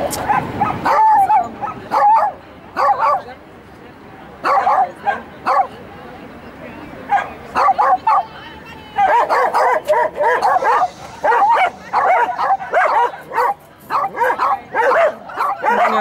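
A dog barking and yipping in short, repeated bursts while it runs an agility course, the barks coming thicker and nearly continuous in the second half, mixed with a handler's shouted commands.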